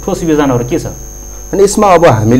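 A man speaking, with a short pause about a second in, over a steady mains hum.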